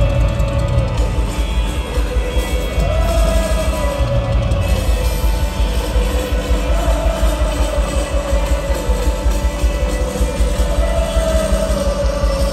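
Live rock band playing loudly through a stadium PA, heard from within the crowd, with a melodic phrase rising and falling that repeats about every four seconds over a heavy low end.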